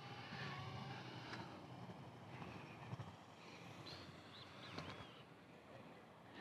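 Faint, steady rolling noise of electric inline skate wheels on a concrete path, with a few light clicks. Some faint, short high chirps come about four to five seconds in.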